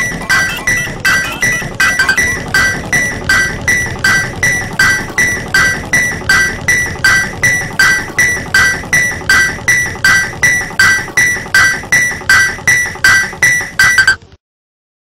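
Music: a short bright note repeated in an even rhythm, about three notes a second, played throughout.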